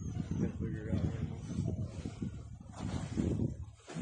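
A man's voice calls out briefly near the start, over an irregular low rumble of noise on the microphone.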